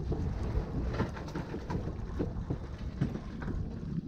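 Wind rumbling on the microphone over water lapping against the side of a small boat, with scattered small knocks.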